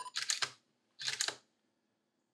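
Camera shutter firing for a test shot: two short clusters of mechanical clicks about a second apart.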